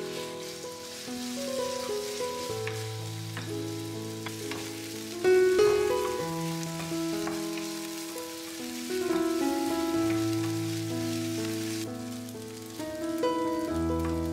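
Diced chicken sizzling in a nonstick frying pan as a wooden spatula stirs it, with a few taps and scrapes of the spatula against the pan and one louder knock about five seconds in. Background music with slow, held notes plays over it.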